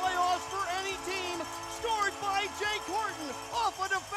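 A man's voice calling the game over steady background tones and music.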